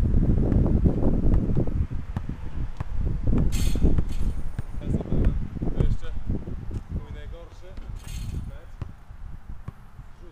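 Rumbling wind noise on the camera microphone that dies away over the second half, with faint voices in the background.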